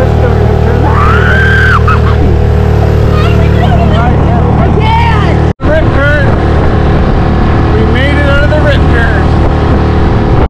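Boat outboard motor running steadily while the inflatable boat is under way, with voices heard over it. The sound drops out for an instant about halfway through.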